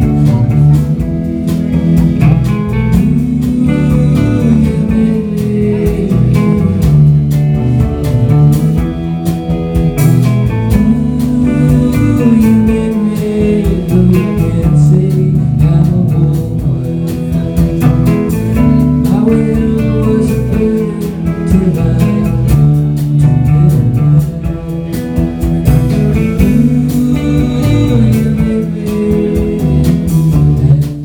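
Indie rock band playing live: electric guitars, bass, keyboard and drums in a steady, full mix with heavy low end.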